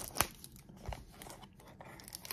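Cardboard Topps baseball-card blaster box being handled and its flap pried open: a sharp click just after the start, then a few faint scrapes and ticks.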